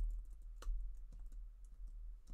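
Typing on a computer keyboard: a handful of separate keystrokes, over a low steady hum.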